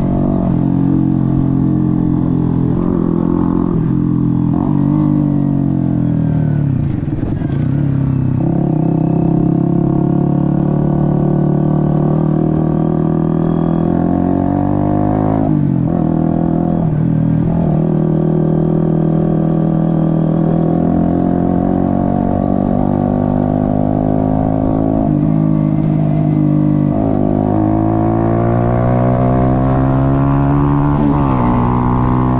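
Honda CBR125R single-cylinder four-stroke engine running under way. Its pitch falls and climbs again about seven seconds in, then drops sharply and climbs several times, as at gear changes.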